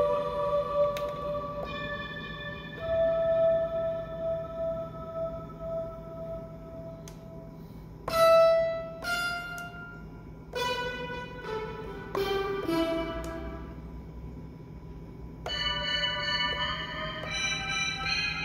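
Synth presets of the Akai MPC's Hype plug-in played from the pads: held notes and chords. A struck chord about eight seconds in is the loudest moment, a note slides down in pitch around twelve seconds, and a fuller run of chords comes in from about fifteen seconds on.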